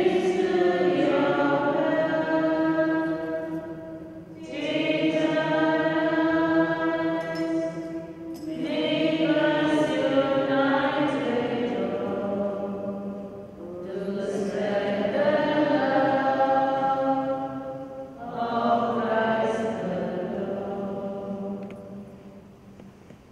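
Offertory hymn sung in five phrases of about four seconds each, with short breaks for breath between them.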